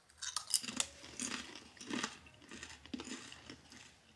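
People biting into and chewing crunchy corn tortilla chips: a run of short, irregular crunches.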